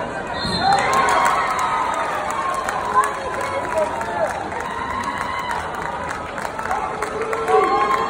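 Spectators shouting and cheering, several voices calling out over one another with long, drawn-out shouts.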